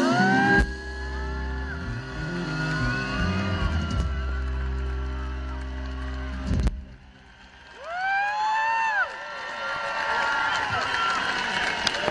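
Live band holding a final sustained chord that stops with one sharp hit about two-thirds of the way through. An arena crowd cheers over it, with high screams rising and falling from fans close to the recorder, loudest just after the chord ends.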